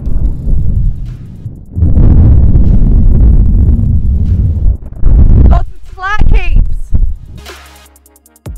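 Strong wind buffeting the microphone: a loud, gusting low rumble that swells about two seconds in and holds for a few seconds. A brief vocal sound comes near the end, and music fades in just before it closes.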